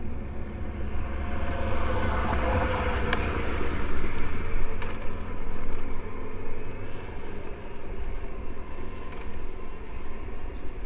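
A motor vehicle passes by: its sound swells, drops in pitch and fades away within a few seconds. A single sharp click comes at the loudest point, over a steady deep wind rumble on the microphone.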